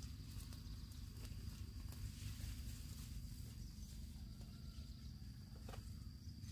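Rustling and a few scattered sharp clicks of a person moving among trellised garden vines and standing up, with a thin steady high tone and a low rumble in the background.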